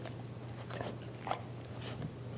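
A few faint soft clicks and smacks from a Chow Chow's mouth at a woman's fingers, over a steady low hum.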